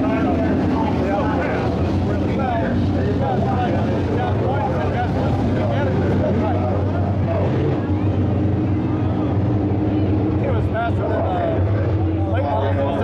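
Race car engines running at a steady pitch, a constant low drone, with people talking nearby over it.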